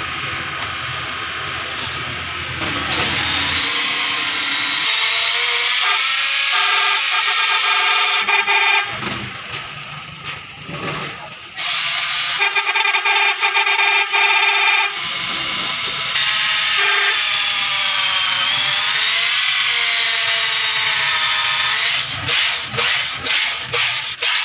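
Heavy electric drill driving a honing tool in a diesel engine's cylinder bore, polishing the bore. Its motor whine starts about three seconds in and wavers up and down in pitch under load, drops out briefly around the middle and picks up again. Near the end it turns to a quick regular pulsing, about three strokes a second.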